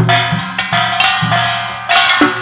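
Kkwaenggwari, the small Korean brass gong, struck with a stick in a quick rhythmic pattern of about five strikes. Each strike rings on with a bright metallic tone.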